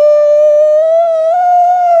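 A man's mock crying wail: one long, high whine held steady and rising slowly in pitch, breaking off suddenly right at the end.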